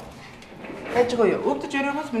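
Speech: a woman's voice talking, after a short quieter pause at the start.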